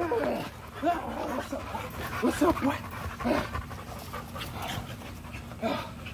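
American Bully dog panting, with a few short pitched vocal sounds scattered through.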